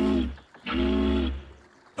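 Cartoon boat's horn hooting twice, a short toot followed by a longer one, deep and steady in pitch.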